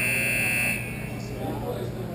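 A shrill, steady signal tone held for about a second, then cut off sharply.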